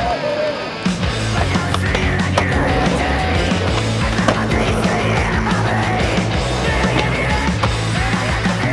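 Loud heavy rock music plays throughout. Over it, a skateboard's wheels roll on asphalt, with sharp clacks from the board popping and landing.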